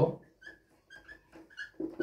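Marker squeaking on a whiteboard while words are written: several short, separate high squeaks.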